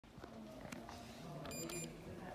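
A Kone lift's landing call button giving a short, high electronic beep about one and a half seconds in, as the down button is pressed and lights up.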